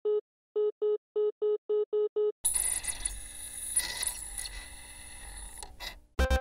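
Electronic loading-screen sound effect. Eight short, identical beeps come faster and faster over the first two seconds. They give way to a dense, buzzing electronic noise that fades and cuts off just before the end.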